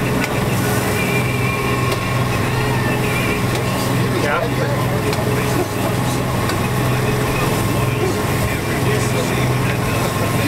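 A fishing boat's engine running steadily under way, a constant low drone, with the hiss of water rushing past the hull.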